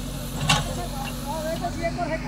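JCB backhoe loader's diesel engine running steadily while its arm works, with a brief sharp noise about half a second in. Faint voices are heard over it.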